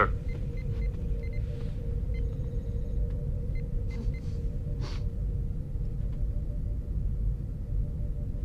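Starship bridge background hum: a steady low rumble with a faint held tone underneath, and a few soft, high computer chirps in the first few seconds. A short soft hiss comes about five seconds in.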